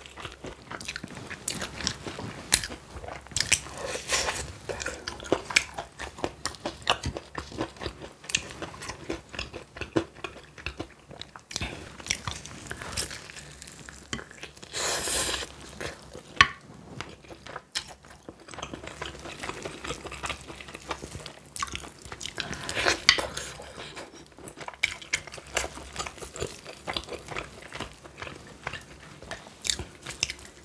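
Close-miked eating of sauce-glazed spicy fried chicken: repeated bites into the crunchy coating, then chewing. There are louder bites about 15 and 23 seconds in.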